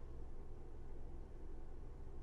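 Faint, steady low hum with a light hiss: the caravan's air conditioner running.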